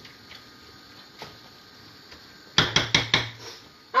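A spatula knocking against a metal saucepan of curry as it is stirred: two faint taps, then a quick run of five or six sharp knocks about two and a half seconds in.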